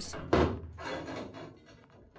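A cut piece of 3 mm steel plate knocks once against the steel hatch opening as it is offered up for fitting, with a short ringing decay after the hit.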